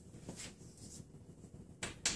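Chalk on a blackboard: a faint tap about a third of a second in and a sharper tap near the end as a symbol is written.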